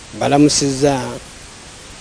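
A person speaking briefly for about a second, then a pause filled only by a steady background hiss.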